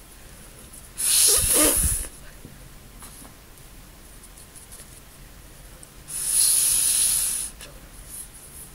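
Two strong puffs of breath blown through a drinking straw to push a drop of blue watercolour across paper: a blow of about a second starting about a second in, with a low rumble of breath on the microphone, and a longer one of about a second and a half starting about six seconds in.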